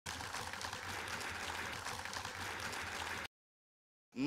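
A steady noisy hiss with a low hum underneath, which cuts off abruptly a little over three seconds in and gives way to dead silence.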